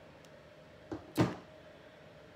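Two knocks on a tabletop about a second in, a light one followed closely by a louder one, as something is put down or tapped on the table.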